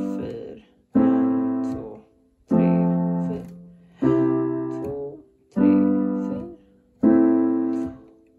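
Piano playing the C, G, Am, F chord progression with both hands, a new chord struck about every second and a half and left to fade before the next.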